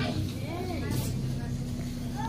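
Steady engine drone inside the cabin of an Alexander Dennis Enviro 400 double-decker bus, with a brief click about a second in.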